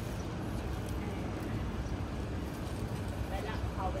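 Steady low background rumble of outdoor street ambience, with faint voices near the end.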